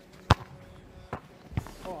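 A football struck hard in a penalty kick: one sharp, loud thump about a third of a second in, then two fainter thuds about a second later. A voice calls out "oh" at the very end.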